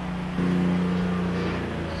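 A steady machine hum made of several low, unchanging tones. It starts abruptly about half a second in and holds level.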